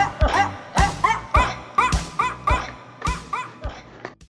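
A song cover built from sampled, pitch-shifted dog barks: short barks play a repeating melody over a steady drum beat, and the music fades out toward the end.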